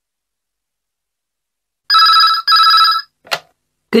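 Telephone ringing once with a British-style double ring, two short bursts close together about two seconds in. A short click follows as the call is answered.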